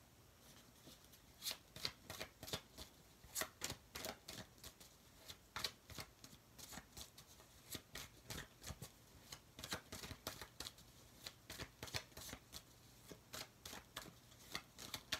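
A tarot deck being shuffled by hand: a soft, irregular run of quick card flicks and slaps, several a second, starting about half a second in.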